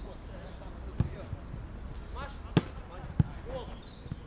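Football being kicked on an artificial-turf pitch: three sharp thuds, about a second in, at about two and a half seconds and just after three seconds, the last two the loudest.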